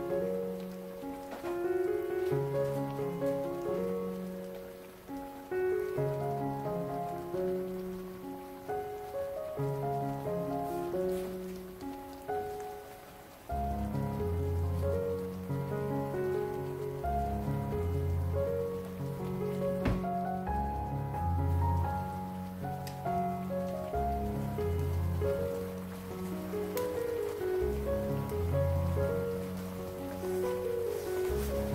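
Background music, a stepping melody with a deeper bass line joining about halfway, over the fizzing bubble of ginger slices boiling hard in sugar syrup in a frying pan.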